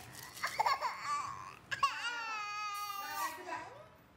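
A one-year-old girl crying: short fussy whimpers in the first second, then one long high cry held for more than a second from about two seconds in.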